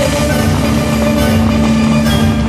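Water-show music over loudspeakers, holding one long low note, mixed with the rushing hiss of the fountain jets.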